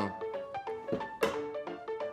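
Background music: a light melody of short, separate notes. A sharp click sounds a little past the middle.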